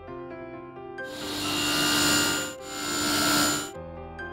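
Table saw cutting into wood in two passes. Each pass swells up and fades, with a short dip between them, and a steady whine runs through the noise of the cut. Soft piano music plays before and after.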